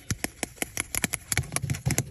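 Wooden stick stirring liquid latex in a small clear plastic cup, clicking quickly and evenly against the cup, about six or seven clicks a second, with a few duller knocks in the second half.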